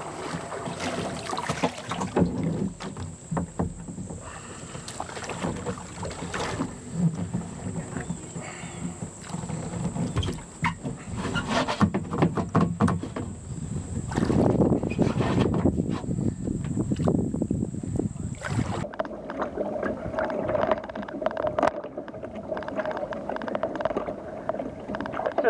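A fiberglass sea kayak being paddled: the paddle blades dip and splash in irregular strokes, and water washes against the hull.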